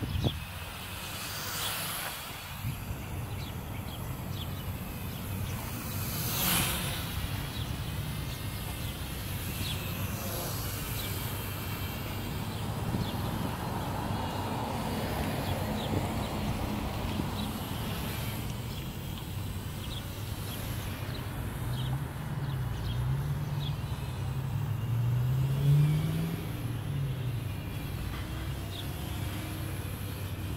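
Wind rumbling on the microphone outdoors, with a couple of stronger gusts in the first seconds. Past the middle, a low hum rises and falls in pitch for a few seconds.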